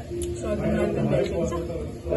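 Speech in Nepali over background music, with no distinct eating or other sound standing out.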